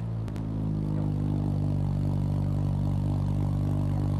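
Car engine running at the exhaust tailpipe just after being started, its revs climbing slightly over the first second and then holding at a steady idle. A brief click about a third of a second in.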